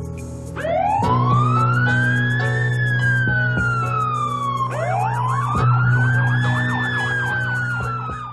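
Police siren wailing over a steady low music bed: two long wails, each rising about half a second in and then slowly falling, the second joined by a fast up-and-down yelp near the end.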